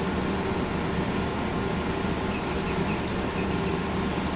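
Steady room hum and hiss of air-handling equipment in a classroom, with a few faint ticks past the middle.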